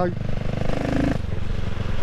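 CCM Spitfire Six's 600cc single-cylinder engine running steadily at cruising speed through its baffled twin exhausts, heard from a microphone inside the rider's helmet.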